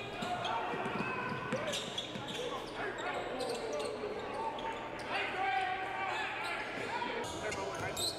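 Game sound from a gym: a basketball dribbling on a hardwood court, with scattered sharp knocks and faint voices from players and spectators echoing in the hall.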